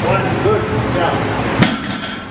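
A barbell loaded with rubber bumper plates set back down on the lifting platform during a deadlift, heard as one sharp knock with a short metallic ring a little past halfway. Voices carry on underneath.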